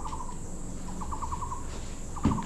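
A short animal trill, a quick run of pulses that falls slightly in pitch, heard at the start and again, longer, about a second in, over a low background hum.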